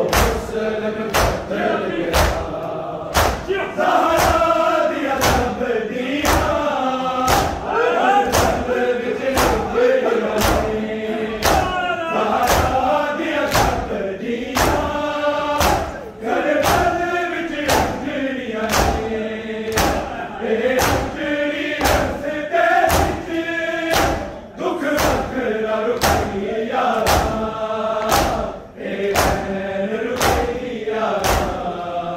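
Men chanting a noha, a Shia lament, in chorus, over the steady beat of matam: mourners striking their bare chests with open hands, a little faster than once a second.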